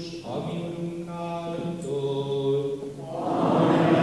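A slow hymn is sung in a church, with held notes that change pitch in steps. It grows louder and fuller about three seconds in.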